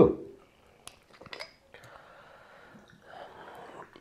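A few small clicks from a vodka bottle's screw cap being opened, then vodka poured from the bottle into a glass shot glass, a quiet pouring sound lasting about two seconds.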